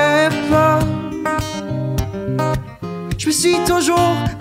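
Acoustic guitar strummed in a steady pattern of chords, with a brief drop in loudness late in the passage.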